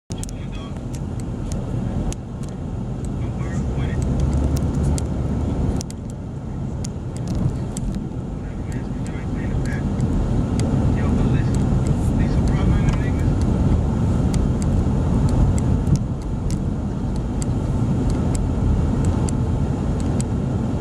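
Road and engine noise heard from inside a moving car: a steady low rumble, with frequent small clicks and knocks through it.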